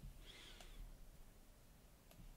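Near silence: faint room tone, with one soft click right at the start.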